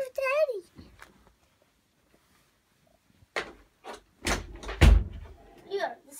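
A short pitched cry from a child at the start, then after a quiet pause a cluster of knocks and bumps, the loudest a heavy thump about five seconds in.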